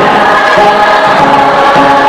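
A group of voices singing a Tibetan folk dance song together in held notes, over instrumental accompaniment.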